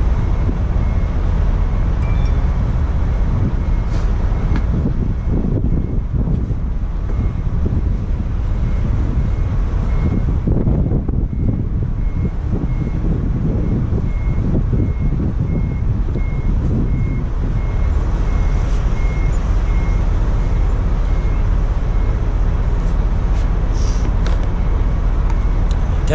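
Wind buffeting the microphone with a loud, steady low rumble. Through it, a distant vehicle's reversing alarm beeps evenly, a little more than once a second, stopping a few seconds before the end.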